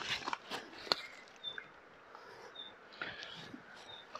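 Quiet rustling and a few light clicks of hazel branches and leaves being handled close to the microphone, with two brief high peeps near the middle.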